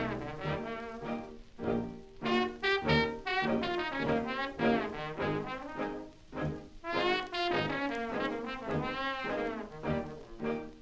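An early jazz band record from the 1920s or early 1930s playing back from vinyl, with brass horns leading in phrases that rise and fall.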